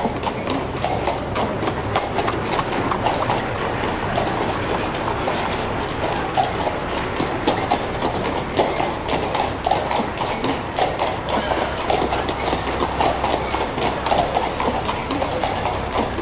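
Added sound-effect ambience of horse hooves clip-clopping on pavement with a wagon's wheels rattling: a busy, irregular clatter throughout.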